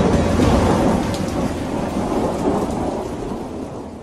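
Thunder rumbling over a steady rain hiss, fading out near the end.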